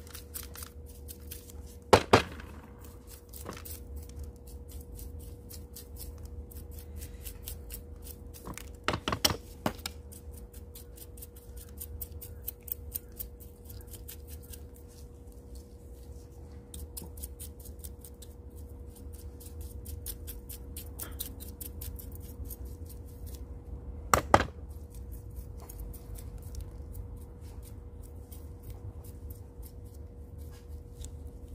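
Long metal tweezers picking and scraping through soaked, gritty potting mix around a succulent's roots: many small clicks and ticks, with three louder knocks about two, nine and twenty-four seconds in.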